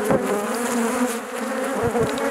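Honeybee colony buzzing on an open brood frame: the wingbeats of many bees together make a steady buzz with a held pitch.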